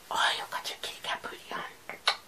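Soft whispering in a string of short, breathy bursts, with no voiced pitch.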